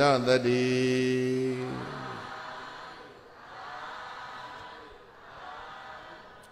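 A man chanting in a Buddhist recitation, holding one long steady note that trails away about two seconds in. After that only faint sound remains.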